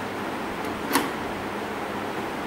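A steady background hiss with a single sharp click about a second in.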